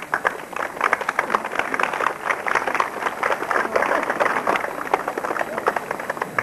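A crowd applauding: many hands clapping in a dense, irregular patter.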